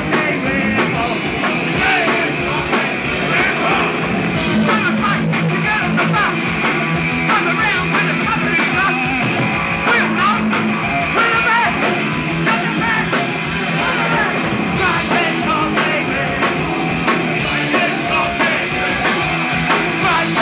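Punk rock band playing live: a singer shouting the vocals into a microphone over electric guitar and drums, loud and continuous.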